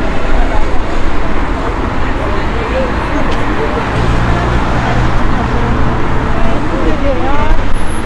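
Busy outdoor street ambience: a steady rumble of traffic-like noise, with passers-by talking indistinctly. A low, steady engine hum comes in about four seconds in and fades near the end.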